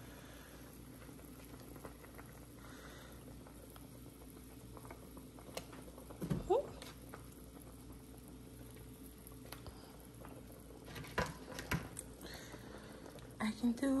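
A pot of pepper soup with catfish boiling on the stove: a faint, steady bubbling, with a few light clicks and one short rising squeak about six seconds in.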